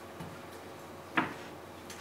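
A few scattered knocks and clicks over a faint steady room background, the loudest a single sharp knock just over a second in.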